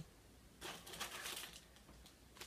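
Faint rustle of hands handling a small plastic packet, lasting under a second and starting about half a second in; otherwise quiet room tone.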